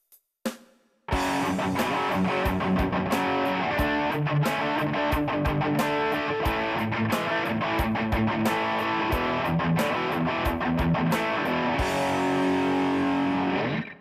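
Distorted electric rhythm guitar, three takes through a Fireman HBE amp panned left 50, centre and right 50, playing a riff over a drum kit. After a couple of clicks, the band comes in about a second in and ends on a held chord that cuts off near the end.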